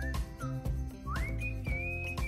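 Background music: a whistled tune that holds its notes and slides up about a second in, over a steady beat.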